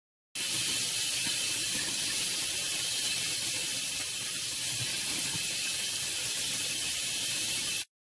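Tap water running onto chickpeas in a fine-mesh strainer as they are rinsed: a steady hiss that starts and cuts off abruptly.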